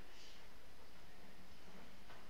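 Faint scratching of a pen writing on paper, over a steady low background hiss.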